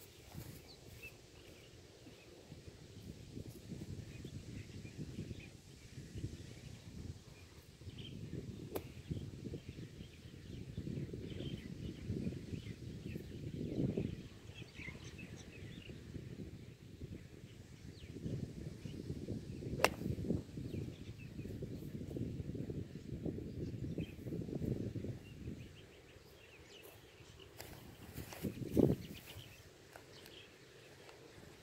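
Gusty wind rumbling on the microphone, with faint bird chirps. About two-thirds of the way through, one sharp crack of a golf iron striking the ball off a sloping fairway lie.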